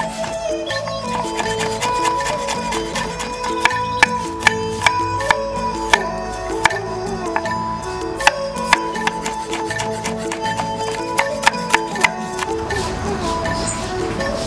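Instrumental background music with a stepping melody. Over it, a chef's knife chops down onto a wooden cutting board in sharp, irregular strikes, slicing ginger and garlic. The chopping stops about twelve seconds in.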